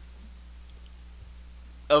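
Pause in a man's speech: room tone with a steady low hum and a faint click or two, then his voice starts again near the end.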